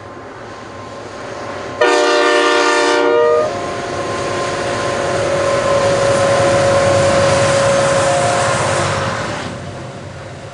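Aurizon GE C44ACi diesel-electric locomotives with GE 7FDL-16 engines passing close by, with one sudden multi-note horn blast of about a second and a half about two seconds in. The locomotives' engine drone with a steady tone then swells and fades as they go by.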